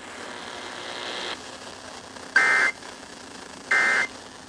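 Emergency Alert System end-of-message (EOM) data bursts played through a portable FM radio's speaker: two short two-tone digital warbles about a second and a half apart, after about a second of faint hiss. They mark the end of the relayed warning message.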